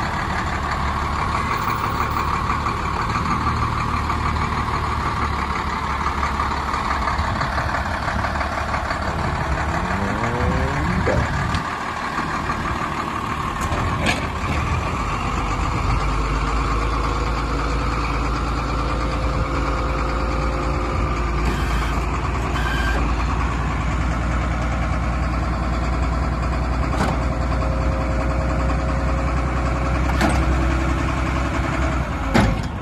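A truck's diesel engine idling steadily, with a brief rise and fall in engine note about ten seconds in and a deeper low rumble from about halfway through.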